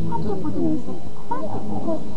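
A person's voice making wordless vocal sounds, over a steady low hum.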